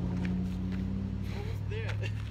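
A motor vehicle's engine running nearby, a steady low hum whose higher tone drops out about a second and a half in.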